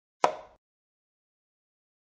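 A single chess-move sound effect from a digital board replay: one short clack, like a piece set down on a board, that dies away within a third of a second.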